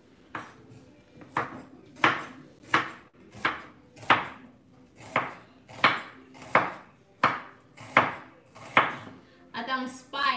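Kitchen knife slicing through yellow onions and striking a wooden cutting board: about a dozen even cuts, roughly three every two seconds.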